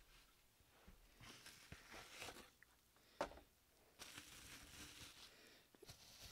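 Faint rustling and crinkling of bubble wrap and cardboard packaging being handled as a wrapped bottle is taken out of a small box, with one sharp click about three seconds in.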